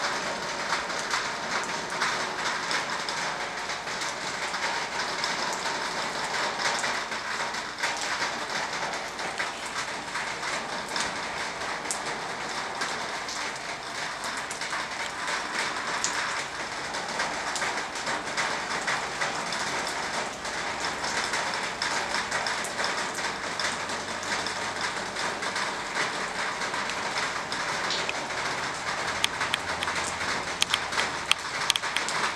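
Steady rain falling: an even hiss with a dense patter of single drops.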